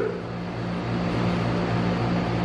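Steady low hum with an even hiss behind it: the room's constant background noise, with no speech.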